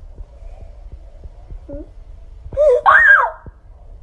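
A person gives one short, high-pitched cry a little over two and a half seconds in, rising sharply in pitch and then falling. Under it is a low rumble with small clicks from the phone being handled.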